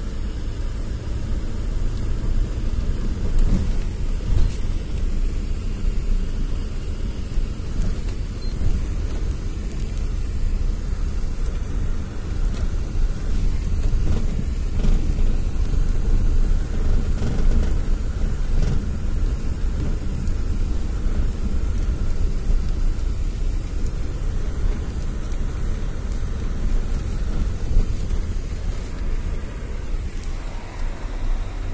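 Steady low rumble of a car driving over an unpaved dirt road, heard from inside the cabin: engine and tyre noise, with a few light knocks from the rough ground.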